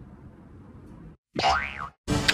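Cartoon boing sound effect about a second and a half in: a short springy tone that rises and then falls in pitch. It follows faint room noise and a brief dropout.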